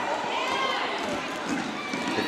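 Basketball players running on a hardwood gym court amid a steady hum of crowd voices in the gym.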